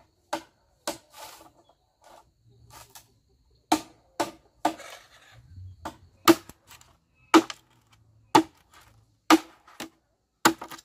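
Machete blade chopping at split bamboo: about ten sharp, woody chops, irregularly spaced and closer together in the second half, with faint rustling of bamboo pieces between strikes.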